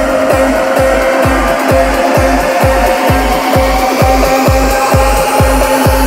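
Loud trance music from a DJ set: a steady four-on-the-floor kick drum at about two beats a second under a held synth note, with a rising sweep climbing in pitch through the second half as the track builds.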